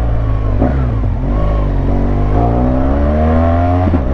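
Large adventure motorcycle's engine accelerating under way. Its pitch dips once about a second in, then climbs steadily until it falls back near the end.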